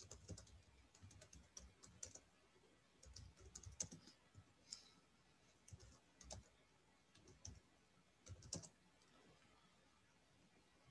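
Faint typing on a computer keyboard: irregular runs of quick keystrokes with short pauses between them, stopping shortly before the end.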